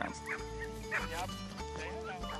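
Dogs barking a few short times over background music with held notes.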